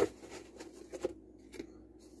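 Hands sorting through paper memorabilia on a table: light rustling with a few soft clicks about half a second apart.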